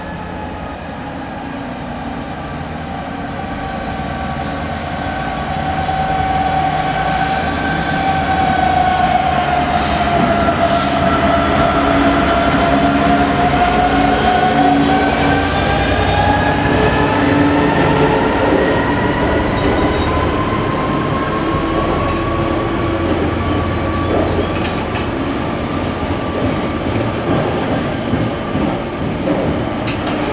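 DB Cargo Class 66 diesel-electric freight locomotive, its two-stroke V12 diesel running, passing close by with a long train of container wagons. The sound builds over the first several seconds as it approaches. A whining tone dips in pitch as the locomotive draws level, then climbs again while the wagons roll past over the rails.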